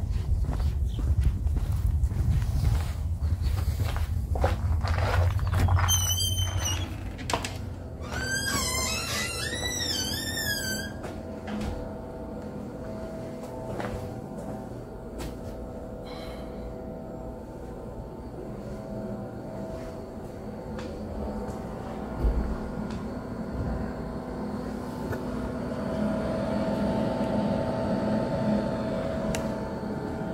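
Wind rumbling on the microphone and footsteps outdoors, then a few seconds of a warbling, rising-and-falling tone repeated several times, then a steady indoor hum with a few constant tones underneath.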